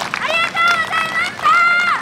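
A voice shouting a drawn-out call in four long, held, high-pitched syllables, each rising at its start and dropping off at its end.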